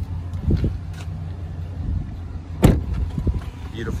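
The door of a 2018 Chevy Tahoe shut with one solid thud about two-thirds of the way through, over a steady low rumble.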